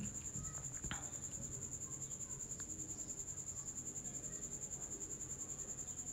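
Insect trilling: a steady, high-pitched trill pulsing about ten times a second, faint against a quiet room, with a faint click about a second in.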